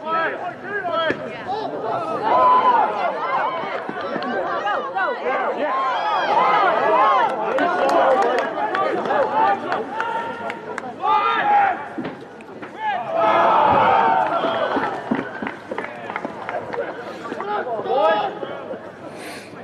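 Many voices shouting and calling out over one another, loud and overlapping throughout, with the loudest bursts of yelling a couple of seconds in, around the middle, and about three-quarters of the way through.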